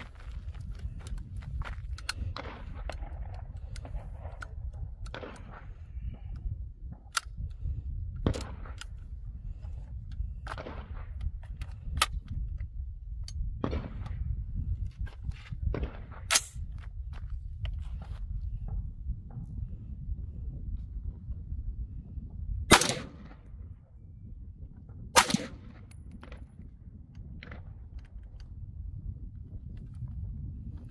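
Two shots from a 7.62x39 AR-pattern rifle, about two and a half seconds apart, after a run of small metallic clicks from the rifle being handled. Wind rumbles on the microphone throughout.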